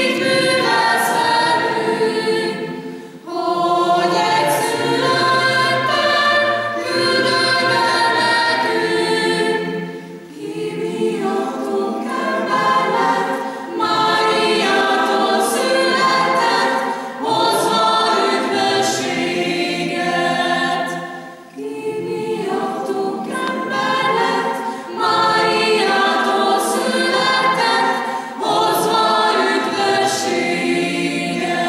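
Mixed choir of men's and women's voices singing unaccompanied. The singing comes in phrases with brief breaths between them, about every three to four seconds.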